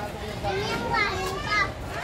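A high-pitched voice talking in a busy market, its pitch rising and falling in a sing-song phrase from about half a second in, over low background chatter.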